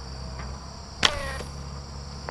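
Slingshot fishing arrow fired about a second in: one sharp snap as the bands are released, followed by a short falling whine. A steady high buzz of insects runs underneath.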